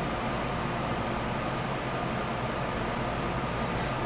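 Room fans and an air conditioner running: a steady, even whoosh with a low hum underneath.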